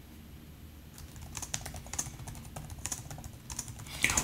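Typing on a computer keyboard: a run of quick, irregular key clicks that starts about a second in.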